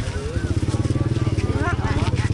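A small engine running steadily with a fast, even low pulsing, under the voices of people talking at a busy open-air market.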